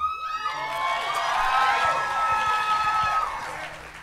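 Studio audience cheering and shouting, with many high voices at once. It fades in the last second.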